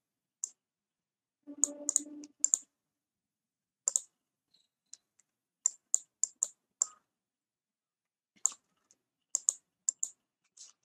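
Irregular sharp clicks from a computer, a dozen or more, some in quick pairs, with a brief low hum about one and a half seconds in.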